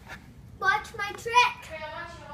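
A young boy's voice, a few short high-pitched syllables or words starting about half a second in, too unclear for the transcript to catch.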